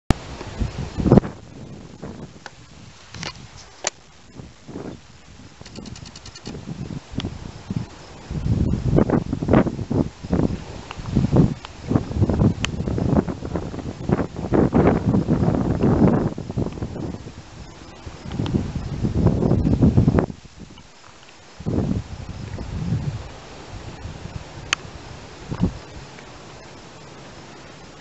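Camera handling noise: irregular rustling, rubbing and bumps on the microphone as the camera is aimed and adjusted, with a few sharp clicks, heaviest in long clusters through the middle.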